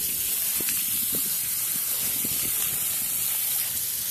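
Water spraying under pressure from a leak in a rusty water supply pipe, a steady hiss with the jet splashing into the flooded hole. The leak is where the pipe was kinked years ago.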